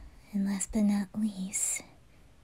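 A woman's soft, close voice: three short murmured sounds at an even pitch, then a brief 'shh'-like hiss near the end.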